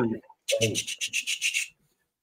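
A man imitating clackers with his mouth: about six rasping, clacking pulses at roughly five a second, lasting a little over a second.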